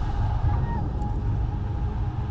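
Low, steady rumble of a moving vehicle heard from inside its cabin.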